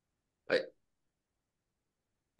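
Silence broken about half a second in by one brief vocal sound from a person, a single short syllable or hiccup-like noise lasting about a quarter of a second.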